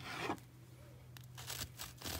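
Faint scraping and crackling of a knife sawing into the crust of a loaf of banana bread on parchment paper, with a few small sharp ticks.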